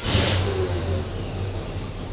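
Chevy 350 V8 in a 1972 Chevelle SS firing right up on a cold start, with no touch of the gas after sitting overnight. It surges briefly as it catches, then settles into a steady, smooth idle.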